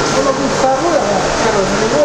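A man's voice speaking, fainter and farther off than the main voice just before and after, over a steady background noise.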